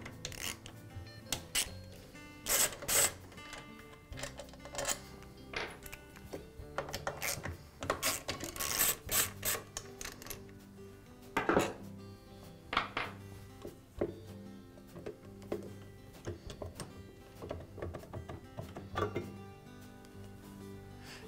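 Background music under scattered sharp clicks, knocks and scrapes of a hand tool and screws on the plastic front cover of a Graco paint sprayer as the cover is unscrewed and taken off; the loudest knocks come about three seconds in and around nine seconds.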